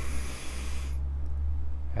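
A deep breath in, a breathy rush lasting about a second at the start, over a low steady hum.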